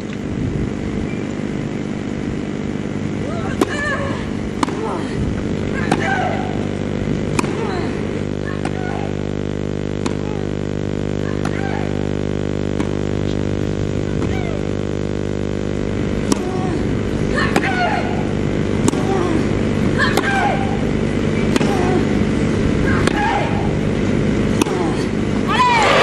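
A long tennis rally on a grass court: racket strikes on the ball every second or two, with short grunts from the players on some of the shots, over a steady low hum.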